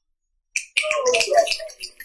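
Carom billiard shot: a sharp click about half a second in, then about a second of a voice with ball clicks running through it, tailing off into scattered light clicks near the end.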